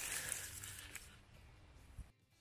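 Rustling of dry leaf litter and undergrowth as someone moves quickly through low brush, fading away over the first second and a half, with a short click near the end.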